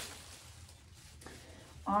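Quiet room with faint handling noise from the shoe box and one faint tick about a second in, then a woman's voice starts near the end.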